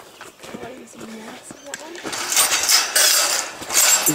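Metal farm gate being unlatched and swung open, its chain and latch rattling and clinking loudly from about two seconds in.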